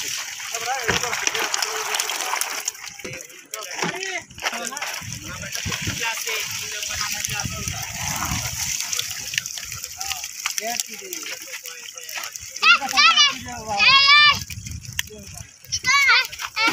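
Water splashing and pouring off plastic fish crates as they are dipped in the river and lifted out full of fish, over people talking. Near the end come several loud, high-pitched voice calls.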